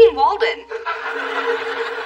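Studio audience laughing, rising just after the end of a spoken line and holding steady.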